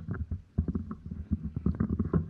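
Low, irregular rumbling and bumping on the microphone, with a few sharper knocks.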